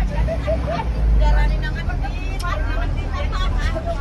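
Low engine and road rumble from inside a moving bus's cab, with people's voices talking over it.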